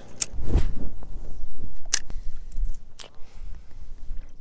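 Four sharp clicks and knocks from handling a fishing rod and spinning reel, over a low rumble of wind on the microphone.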